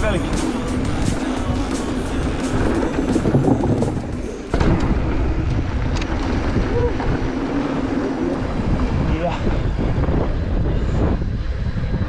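Wind buffeting a helmet-mounted camera's microphone and mountain-bike tyres rumbling over a dirt trail during a descent. The level dips briefly about four and a half seconds in, then comes back at once.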